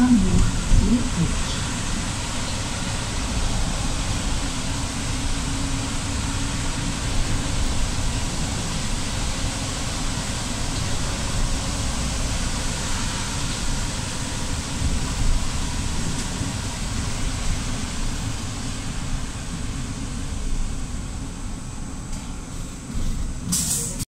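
Inside a moving city bus: steady low rumble of the bus's engine and running gear with an even hiss of tyres on a wet road. A short, sharper burst of noise comes just before the end.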